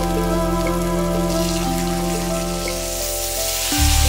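Butter sizzling in a hot nonstick wok, the sizzle building from about a second in. Near the end it jumps louder as peeled shrimp go into the pan.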